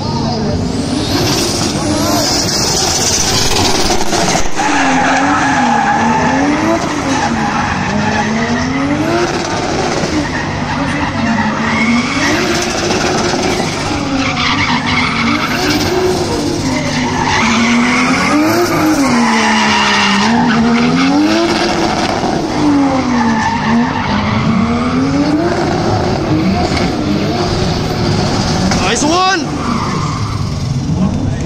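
Nissan RB25DET turbo inline-six in a drifting A31 Cefiro, revving up and falling back in pitch about every two seconds, over a steady tyre squeal. It is held in second gear because a faulty wastegate causes boost cut in third, so it repeatedly runs into the rev limiter.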